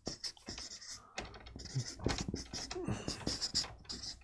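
Marker pen scratching and squeaking across flip chart paper in a series of short, irregular strokes as block letters are written.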